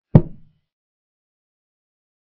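A chess program's piece-move sound effect: one short, hollow wooden knock as a pawn is placed on its new square. It dies away within half a second.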